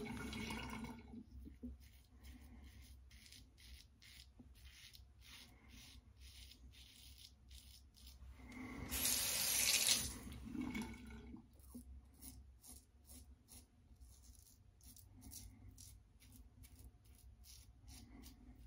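Bathroom sink tap running as the safety razor is rinsed, fading out about a second in and running again for about two seconds around nine seconds in. In the quieter stretches between, the razor gives faint, short scraping strokes on lathered stubble.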